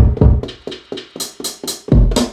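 Programmed boom-bap hip-hop drum beat playing: kick and snare hits, several a second, with a heavy low kick at the start.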